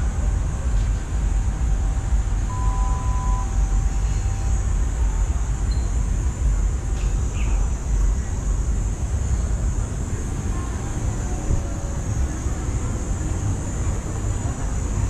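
Steady outdoor city din, mostly a low rumble like distant traffic, with a faint steady high hiss and a brief short tone about two and a half seconds in.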